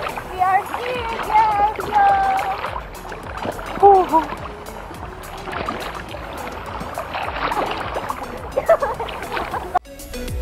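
Sea water sloshing and splashing around a person floating in a life jacket, with voices calling out over it in the first few seconds and again briefly near the end.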